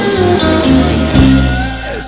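Band music, an instrumental passage led by guitar over a steady bass line, with no singing.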